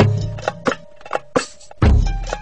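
Dance music played over a loudspeaker: sharp drum hits about four or five a second over a held tone, with a heavy bass beat coming back in near the end.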